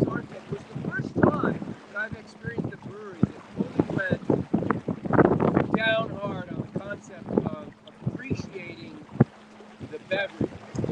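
Men talking in conversation, with wind on the microphone, and a single sharp knock about nine seconds in.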